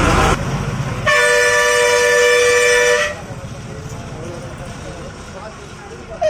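Bus horn sounding one loud, steady blast of about two seconds, several pitches held together, over the bus's running noise, which carries on more quietly after it.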